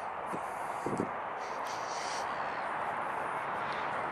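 Steady city background noise at night, the hum of distant traffic, with a couple of soft knocks in the first second.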